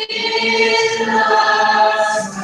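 A chorus of young voices singing together in held notes, with the notes shifting to a new chord about a second in.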